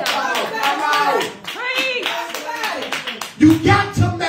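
Steady rhythmic hand clapping under a man's voice through a microphone, with long drawn-out vocal phrases in the middle. About three and a half seconds in, a deep bass note comes in loudly.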